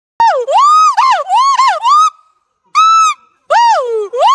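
Gibbon giving its loud territorial call: a run of hooting notes that swoop up and down in pitch, a short pause, a brief held high note, then another swooping whoop near the end.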